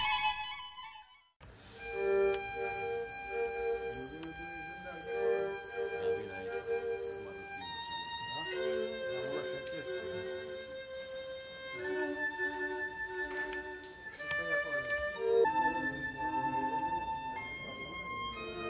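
Chamber string orchestra playing classical music, violins over cellos, in a slow passage of held notes that change every second or two. It begins about a second and a half in, after a brief silence.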